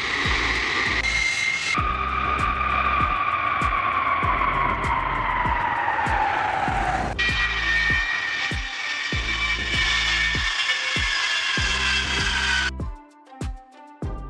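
Jet engines of a Lockheed C-5M Super Galaxy, its four turbofans giving a high whine that glides steadily down in pitch for several seconds as the aircraft passes, then, after a cut, a steadier whine. Background music with a steady beat runs underneath, and both drop away about a second before the end.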